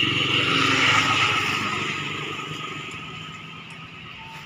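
Small motorcycle engine running as the bike pulls away and rides off, fading steadily into the distance.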